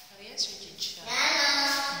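A child's voice singing, holding one long steady note through the second half, after two brief sharp sounds in the first second.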